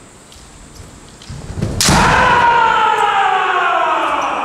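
Kendo fencers clashing: a sharp crack of impact about two seconds in, then a long, loud kiai shout that slowly falls in pitch.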